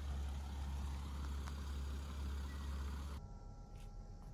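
Van engine idling, a steady low rumble heard from inside the cab, which cuts off suddenly about three seconds in, leaving a quiet room with a faint electrical hum.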